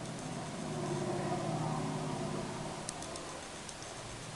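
An engine hum that swells about half a second in and fades away by about three seconds, as a motor vehicle passing by would. Faint high ticking runs under it.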